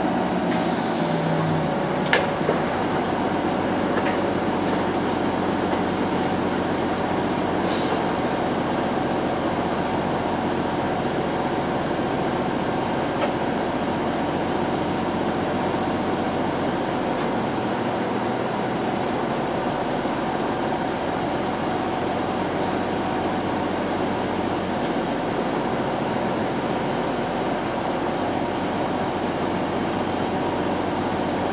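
Inside a TTC CLRV streetcar as it slows to a stop and stands: a motor whine falling slightly in pitch in the first seconds, then a steady hum from the car, with two short hisses, about a second in and near eight seconds.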